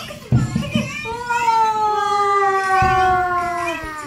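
A high voice holds one long, drawn-out exclamation for about three seconds, its pitch sliding slowly downward. It is preceded by a sudden thump near the start.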